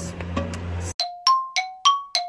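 A two-note chime sound effect starting about a second in: ringing bell-like strikes alternate between a lower and a higher pitch, about three a second, each dying away before the next. Before it there is a low steady outdoor hum.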